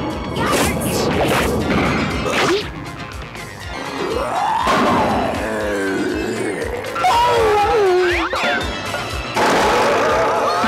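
Cartoon soundtrack music with crash and whack sound effects: a loud noisy crash at the start and another near the end, with wavering, gliding pitched tones in between.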